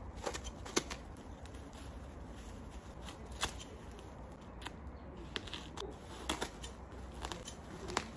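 Scissors snipping through the plastic wrapping of a tightly packed bale, with the plastic crinkling and tearing between cuts; a handful of separate sharp snips come at uneven intervals.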